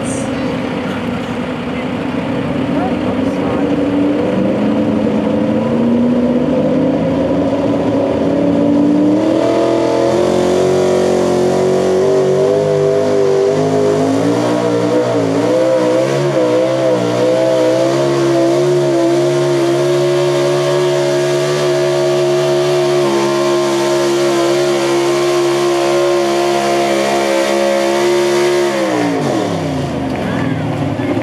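Ford pickup pulling truck at full throttle, dragging a weight-transfer sled: the engine revs climb steadily for about nine seconds, then hold high with the pitch wavering for a few seconds in the middle. The engine drops away sharply just before the end as the throttle is released.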